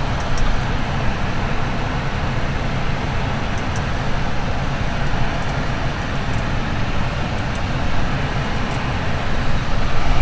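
Steady rush of the climate-control blower with a low rumble underneath, inside the cabin of a parked car with its engine running.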